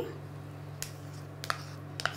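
Two or three light, sharp clicks of a metal spoon and utensils against a steel mixer-grinder jar while cream is spooned into it, over a steady low hum.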